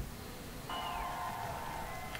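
Opening of a played-back TV broadcast, faint: a buzzing electronic tone comes in about two-thirds of a second in, with a high whistle sliding down in pitch over it.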